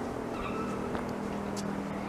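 Quiet town-street background with a steady low hum and a few faint ticks.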